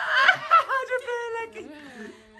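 A person laughing: a few short snickers in the first second, trailing off into softer laughter.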